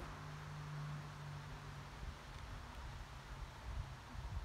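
Quiet background noise: a faint, steady low hum with a low rumble beneath it, the hum fading about halfway through. No distinct event stands out.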